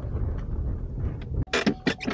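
Low rumble of a pickup truck driving on a gravel road, heard from inside the cab. It stops abruptly about one and a half seconds in, followed by a few sharp clicks.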